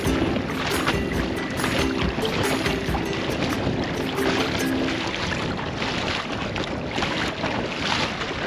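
Legs wading through shallow seawater, splashing continuously, with wind buffeting the microphone. Background music with short repeated notes plays over it and ends about five seconds in.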